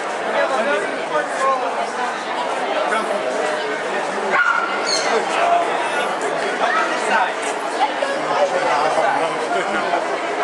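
A dog barking and yelping a few times over steady crowd chatter, with the sharpest calls in the middle.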